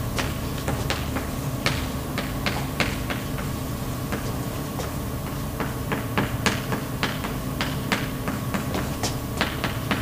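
Chalk writing on a blackboard: quick, irregular taps and short scratches as letters are formed, over a steady low room hum.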